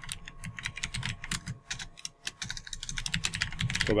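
Fast, irregular keystrokes on a computer keyboard as a line of code is typed.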